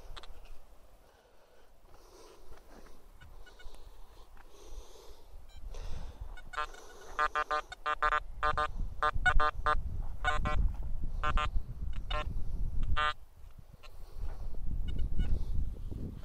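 Metal detector giving a run of short electronic beeps as its coil is swept over freshly dug soil, responding to a buried metal target. The beeps come in quick bursts from about six seconds in until near the end, over a low rumble.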